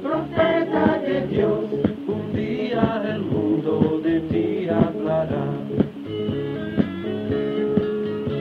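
Spanish-language song with classical guitar accompaniment: singing for about the first six seconds, then the guitar carries on alone with steady held notes.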